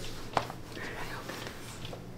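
Hotel room curtain drawn open by hand: a sharp click about half a second in, then a soft rustle of fabric, over a low steady room hum.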